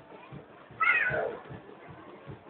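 A short, high-pitched, meow-like wavering cry about a second in, over regular low thumps about two or three times a second.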